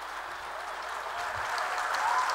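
Audience applauding a speaker's arrival at the podium, the clapping growing steadily louder.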